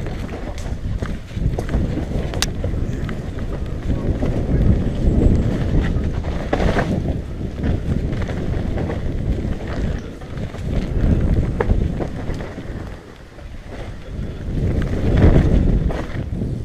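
Wind buffeting an action camera's microphone as a mountain bike rides fast down a dirt forest trail, with the tyres rumbling over the ground and occasional sharp clicks and knocks from the bike.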